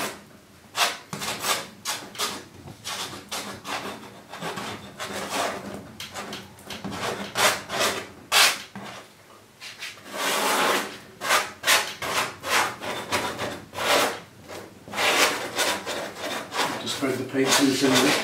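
A metal cake knife spreading thick acrylic paint across a stretched canvas: a string of scraping strokes at an irregular pace, with quicker runs of strokes about ten and fifteen seconds in.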